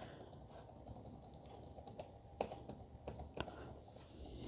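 Faint taps on a Sony VAIO laptop keyboard: a function key, F12, pressed several times at irregular intervals during power-on to call up the boot menu.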